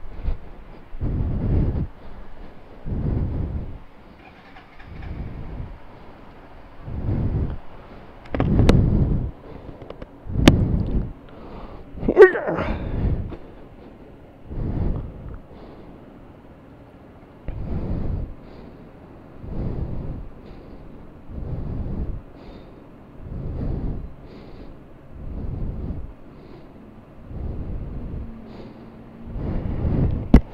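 Breathing into a helmet-mounted microphone: a gusty puff every couple of seconds. There is a sharp click about ten seconds in and a short squeak a couple of seconds later.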